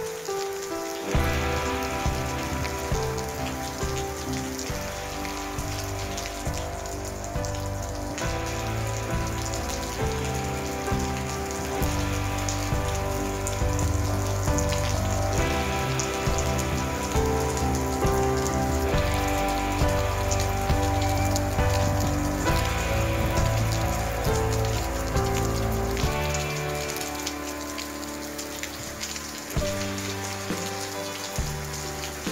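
Heavy rain falling steadily, with a constant hiss of drops, mixed with background music of held chords over a low bass line that changes every few seconds.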